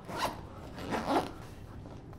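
Zipper on a bag being pulled in two quick rasping strokes: a short one at the start and a longer one about a second in.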